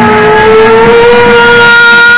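A woman's singing voice holding one long, very loud note over a rock backing track, the pitch lifting slightly about half a second in.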